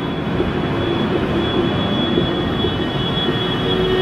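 Steady whirring background noise with a faint, steady high-pitched whine.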